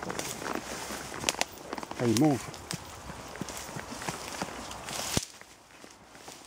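Steps of a horse and a person moving through woodland undergrowth, with twigs and branches crackling and snapping in quick, irregular clicks over a rustle of leaves. The rustling drops away suddenly a little after five seconds.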